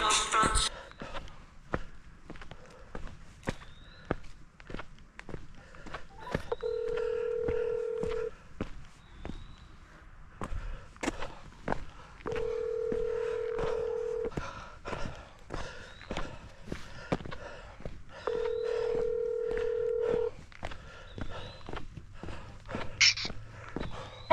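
Telephone ringback tone from a smartphone on speaker: three steady two-second rings about six seconds apart, the North American ring pattern, while an outgoing call waits to be answered. Faint footsteps and small knocks run under it.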